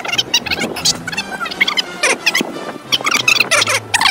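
Fast-forwarded audio: sped-up, high-pitched chattering voices over background music with steady low notes.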